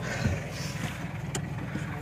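Jeep engine running at a steady low idle, heard from inside the cab, with a single sharp click a little over a second in.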